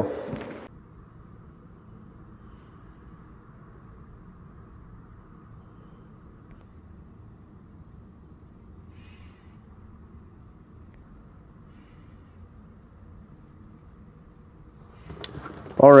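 Faint steady room tone, a low even hum with no distinct event. A man's voice trails off at the very start and starts again just before the end.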